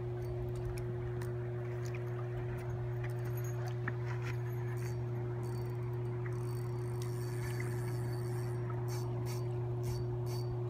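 Steady low electrical hum with a higher steady tone above it, unchanging throughout, over a wash of background noise with scattered faint clicks.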